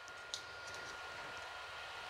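Quiet room tone: a faint, steady hiss with a thin, steady high tone, and a soft tick about a third of a second in.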